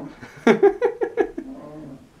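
A young man laughing: a burst of about six quick pitched "ha" pulses starting about half a second in, trailing off into a lower fading tone near the end.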